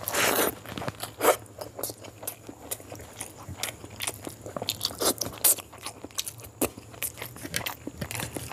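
Close-up wet chewing and mouth smacks from a large mouthful of rice and boiled quail eggs, louder in the first half second as the food is pushed in, then many sharp clicks. Sticky squishing of a bare hand mixing rice on the tray.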